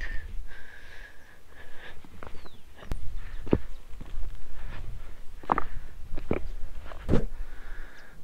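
Footsteps on a stone path, a handful of uneven steps, over a steady low rumble.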